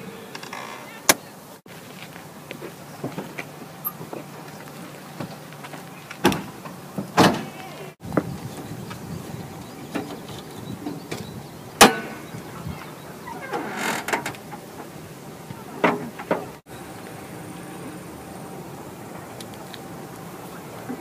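A handful of separate clunks and clicks from a Toyota car's hood release lever and front hood latch being worked and the hood being raised, with a brief scrape; the loudest clunk comes near the middle. A faint steady hum lies underneath.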